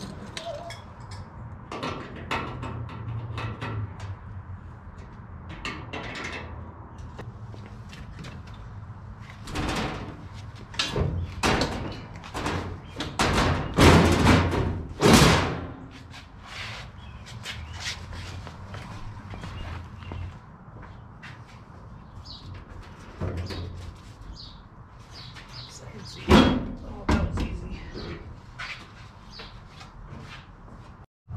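Knocks, clanks and thumps of a bench seat being unbolted and lifted out of a 1941 Chevy truck's steel cab. The loudest thumps come in a cluster about halfway through, with another sharp one a few seconds before the end.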